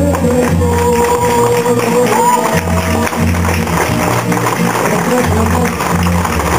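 Latin backing track over a PA with a man singing into a microphone, holding one long note in the first second or so.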